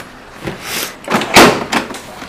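A scooter's plastic storage lid being shut: a brief scrape, then two knocks about a second in, the second a loud thud.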